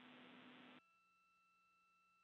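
Near silence: a faint hiss from the open communications loop stops under a second in, leaving only faint steady tones.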